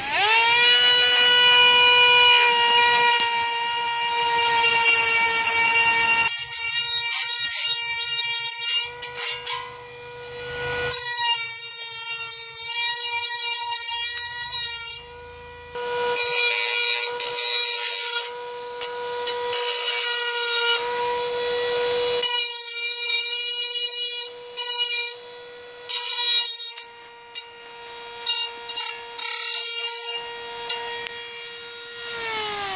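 Dremel rotary tool fitted with a grinding wheel, spinning up with a rising whine and then holding a high steady whine as it smooths the cut edge of a perforated steel utensil holder. A harsh grating noise comes and goes over the whine as the wheel is pressed to the metal, breaking into short bursts near the end.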